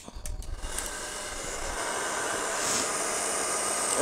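A steady rushing hiss that grows gradually louder, with a low rumble in the first second or two.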